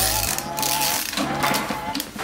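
Ratchet wrench clicking in short bursts as it turns a socket and hex bit on a shock absorber's top mount nut, metal on metal, with background music underneath.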